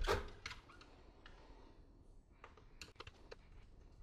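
Hands handling an aluminium bench power supply case: a sharp clack right at the start, then scattered light clicks and taps.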